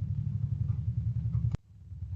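Steady low background rumble, cut off by a single sharp click about one and a half seconds in, after which it drops away briefly.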